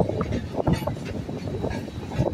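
Running noise of a moving passenger train heard from an open coach door while it passes a goods train on the next track: a steady rumble of wheels on rail with irregular sharp knocks and clatter.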